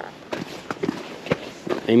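Footsteps of a person walking with the camera, several uneven steps over a low background hiss.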